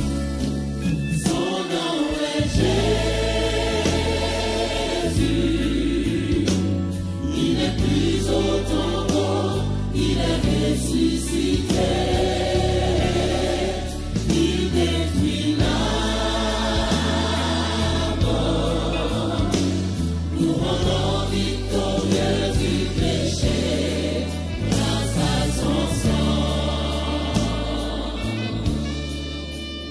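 A vocal group of five, women and men, singing a gospel song in harmony into microphones over live band accompaniment with keyboard.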